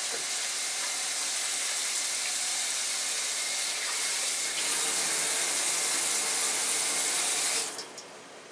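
Water running steadily from a tap, a little louder about halfway through, shut off abruptly shortly before the end.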